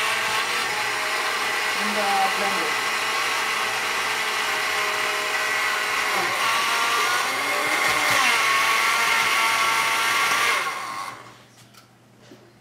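Countertop blender motor running steadily, puréeing avocado with water and sour cream into a thin, runny guacamole; its whine wavers a little in pitch around eight seconds in. The motor cuts off suddenly about a second before the end, leaving only a few small knocks.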